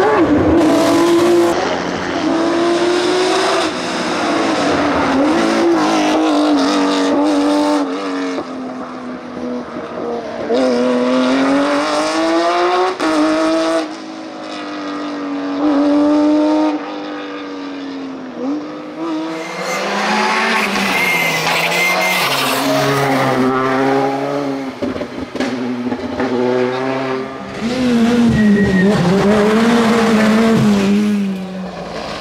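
A succession of rally cars driven hard through tight tarmac hairpins, engines revving up and dropping back with each gear change and lift. Tyres squeal briefly about two-thirds of the way through.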